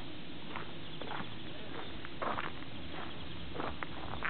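Outdoor ambience: a steady hiss with a handful of brief, sharp sounds scattered through it, a small cluster of them just past the halfway point.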